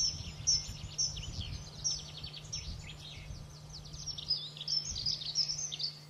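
Small songbirds chirping and singing in a busy, continuous stream of quick high notes and trills. Underneath runs a steady low hum with some rumble.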